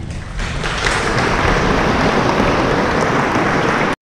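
Large audience applauding. The clapping builds over the first second, holds steady, then cuts off abruptly just before the end.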